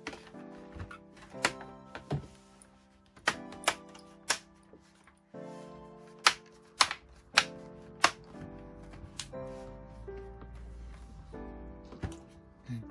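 Plastic clips of an Acer Nitro AN515-57 laptop's bottom cover snapping into place as the panel is pressed back on: a string of about ten sharp clicks, the loudest a few near the middle. Background music plays throughout.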